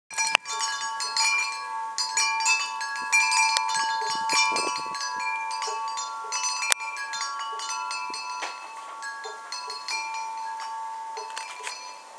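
Wind chimes ringing, many struck metal tones at a few fixed pitches overlapping and sustaining, slowly fading toward the end. A sharp click sounds near the start and another about seven seconds in.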